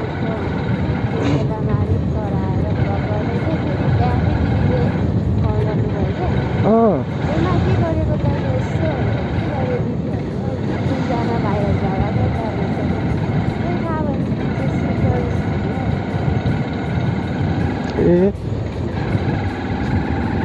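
Motorcycle riding along at a steady pace, its engine and road noise mixed with wind rushing over the microphone.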